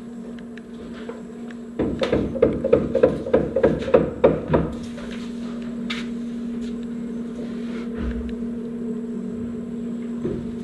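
Hammer blows on wood, about three a second for roughly three seconds starting about two seconds in, over a steady low hum.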